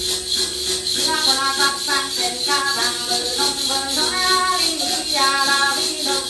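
A woman sings a Tày then ritual chant with a wavering, melismatic line. Over it runs a steady, rhythmic jingling of shaken bells.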